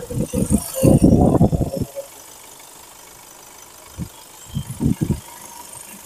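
Kia Seltos 1.5-litre CRDi four-cylinder diesel engine idling, heard close up from the open engine bay. It is loud and uneven with handling noise for about the first two seconds, then drops to a faint steady sound.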